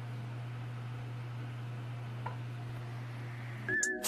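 A steady low hum with faint hiss, broken by a single small click about two seconds in; just before the end a high tone sets in as music begins.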